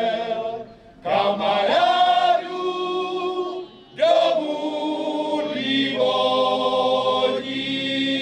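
Men's folk choir singing unaccompanied in several-part harmony: two short phrases with brief breaks between, then a long held chord from about halfway through.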